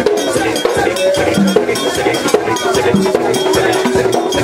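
Live Vodou ceremony music: a man singing through a microphone over a fast, steady percussion beat.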